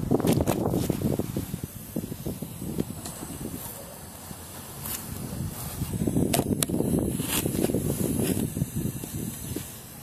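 Footsteps and rustling on dry grass, with handling noise from a hand-held camera held close to the ground. A few sharp clicks fall in the second half.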